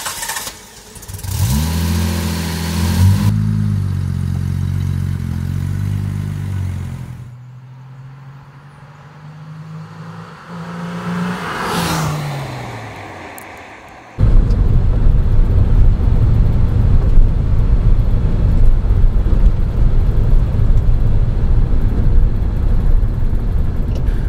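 A 1961 Jaguar E-Type's 3.8-litre straight-six starts about a second in, revs briefly and runs on steadily. The car then passes at speed, its engine note rising and falling around the middle. From about two-thirds of the way through comes steady engine and road noise heard from inside the car on the move.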